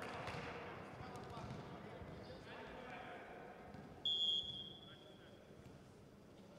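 Faint sports-hall murmur, then about four seconds in a referee's whistle blows one steady high note for about a second and a half, the signal for the next serve.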